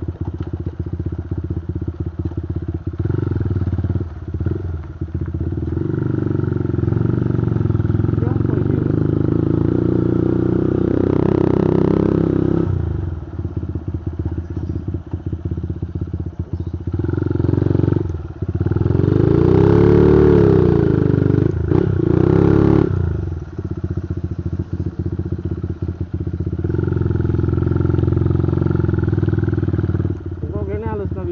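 Motorcycle engine running under way, mostly steady, with two spells where the revs rise and fall: one about a third of the way in and a louder one about two-thirds in.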